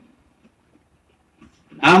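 Near silence in a pause between a man's sermon phrases, with only faint room noise; his preaching voice starts again near the end.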